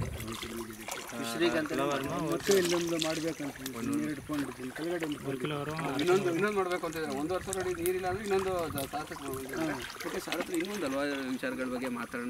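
Speech: a man talking, most likely in Kannada, which the recogniser did not write down.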